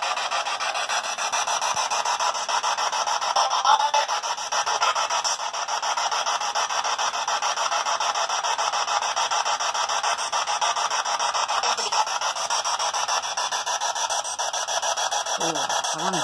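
Spirit box, a radio rapidly sweeping through stations, giving out a steady hiss of static, finely chopped as it scans. A brief voice-like snatch rises out of it about four seconds in.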